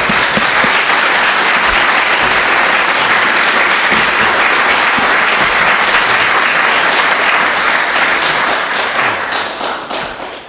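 Audience applauding, loud and steady, thinning out near the end.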